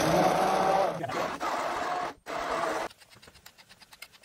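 Immersion blender running in a stainless steel pot of roasted tomato and vegetable soup, pureeing it with a steady motor whine. It breaks off briefly about two seconds in, runs again, and stops about three seconds in, leaving faint rapid ticks.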